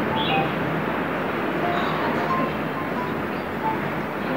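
Steady outdoor background noise, a constant rushing hiss, with a few faint short chirps scattered through it.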